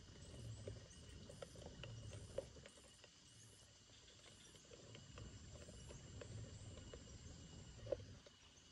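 Faint outdoor ambience of insects calling: steady thin high tones and short high chirps repeating irregularly about once or twice a second. Two light clicks come about two seconds in and just before the end, over a soft low rumble.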